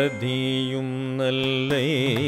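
Carnatic devotional song in raga Revati: one long melodic note is held steady, then wavers in ornamental oscillations (gamakas) near the end.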